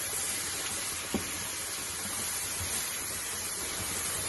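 Beef, zucchini, green pepper and mushrooms sizzling steadily in hot oil in a frying pan as a wooden spatula stirs them, with a single sharp knock about a second in.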